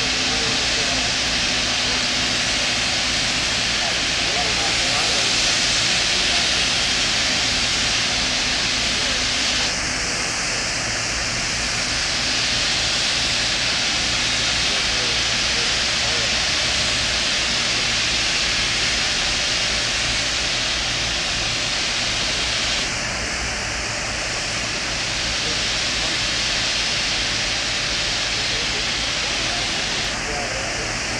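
Steady, loud hiss of high-pressure water blasting against a ship's steel hull in drydock, easing slightly about ten seconds in and again near the 23-second mark.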